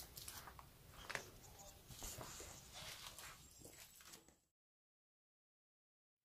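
Faint footsteps and rustling on a leaf-littered forest floor with small clicks, then dead silence from about four and a half seconds in.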